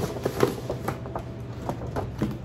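A stiff paper shopping bag rustling and crinkling as a boxed gift is pulled out of it: a string of short, irregular crackles and scrapes.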